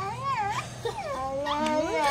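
A toddler's high-pitched whining vocalisations, several short cries gliding up and down in pitch.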